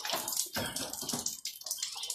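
Steady background hiss of water, with a few faint knocks and clicks.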